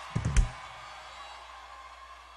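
Two quick low thumps about a quarter-second in, the second louder, over the live stage sound system. After them comes a faint, steady background with a thin held tone.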